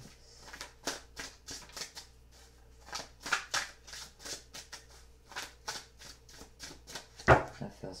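A tarot deck being shuffled by hand: an irregular run of quick, soft card flicks and slaps, with a few much louder knocks near the end.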